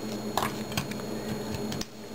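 Small scattered clicks and light knocks of a plastic Transformers action figure being handled and posed, its jointed limbs moving, over a steady low hum.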